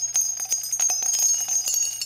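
Jingling bell sound effect: many small bells shaking rapidly with a high, steady ring.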